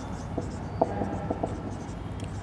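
Marker pen writing on a whiteboard: a run of short strokes and light taps as a word is written out.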